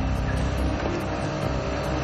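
Vehicle engine idling with a steady low rumble.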